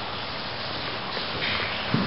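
Steady hiss of noise, with a soft knock near the end.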